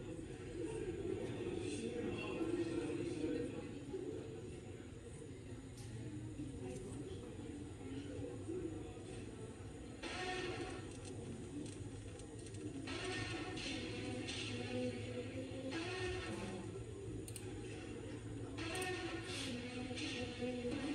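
Faint, muffled playback of the quiet opening of a music video's live session, heard from speakers in the room: low music with some voice-like sound. The level swells a little around the middle and again near the end.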